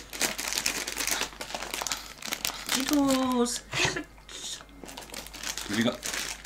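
Plastic crisp packet crinkling and rustling over and over as it is handled. A short burst of voice about halfway through is the loudest moment.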